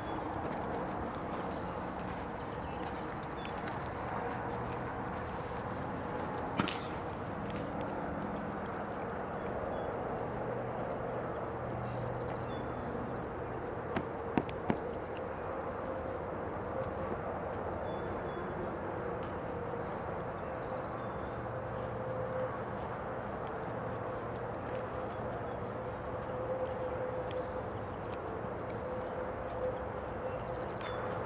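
Steady outdoor background noise with a faint steady hum, broken by a few sharp clicks of horse tack being handled while a horse is saddled, including a quick cluster of three about halfway through.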